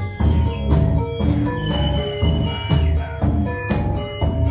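Instrumental hip-hop groove with no rapping: a double bass and drums keeping a steady beat, with short melodic notes over the top.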